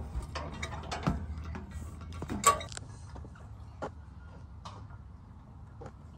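Metal playground stepping pods and their hanging chains creaking and knocking as children step across them: irregular clicks and knocks, the loudest about two and a half seconds in.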